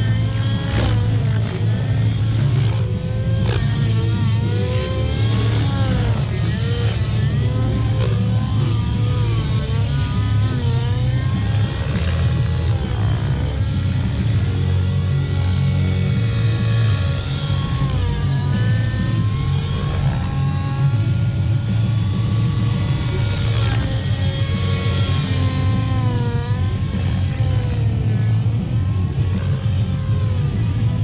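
Nitro T-Rex 700 RC helicopter in flight: its OS .91 two-stroke glow engine and rotor running steadily under a governor holding about 1950 rpm head speed, with music playing over it.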